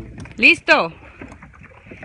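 A short two-syllable spoken exclamation about half a second in, then faint water and paddle noise around a sit-on-top kayak.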